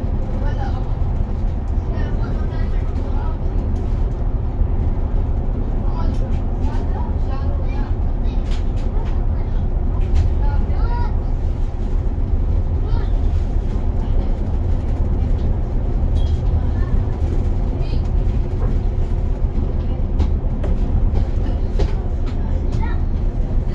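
Steady low engine and road rumble inside a city bus cruising along a highway, with faint voices now and then.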